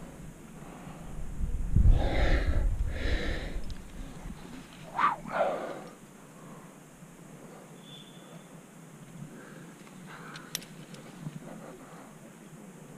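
A rock climber's hard breathing while moving on the rock: two long, heavy exhales about two seconds in, then two short, sharp breaths about five seconds in. A few faint clicks follow near the end.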